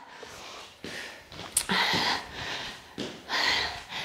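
A woman breathing hard from exertion during low side-to-side squat steps, heard close on a clip-on microphone: two or three noisy breaths without voice. A brief high squeak comes about one and a half seconds in.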